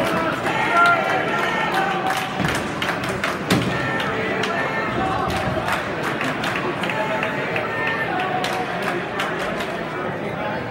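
Bowling alley din: a murmur of many voices, with scattered clicks and knocks of balls and pins from the lanes.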